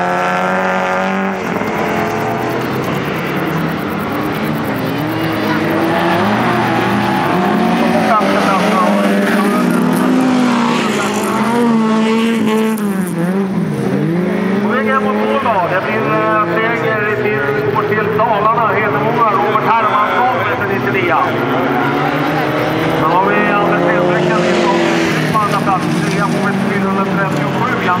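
Several folkrace cars racing around a dirt track, their engines revving up and down in pitch as they accelerate and lift through the corners, with the sound of several cars overlapping.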